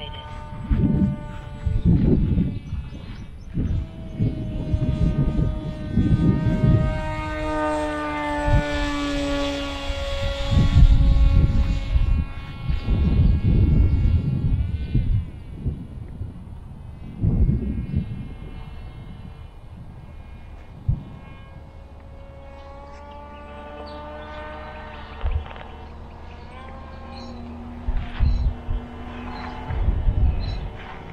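Electric motor and propeller of an FX-61 Phantom flying wing passing overhead. Its whine falls in pitch as it goes by and rises again as it comes back round near the end. Gusts of wind buffet the microphone.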